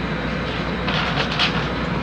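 Steady background hiss with a low hum, the room and recording noise of a press conference, heard in a pause between words.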